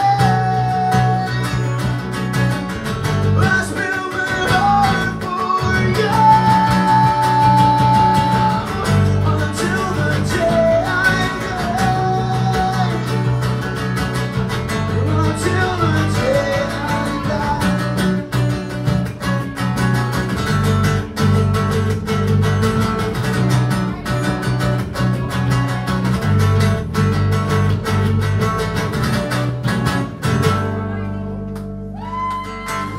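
Live acoustic band: strummed acoustic guitars with male voices singing over them, including a long held note about six seconds in.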